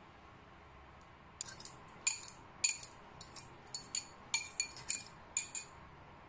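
Metal spoon clinking irregularly against a glass bowl while stirring a pork bouillon cube into hot water to dissolve it. The clinks begin about a second and a half in and come in a quick, uneven run of about fifteen.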